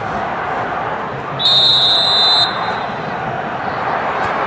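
Referee's whistle: one steady high blast about a second long, starting about a second and a half in, signalling the penalty kick to be taken. Spectators chatter throughout.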